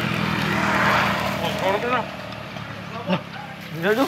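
A motorcycle engine passing close by, its hum swelling to a peak about a second in and then fading away.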